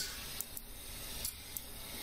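Quiet room tone: a steady low hiss of microphone noise, with a few faint clicks.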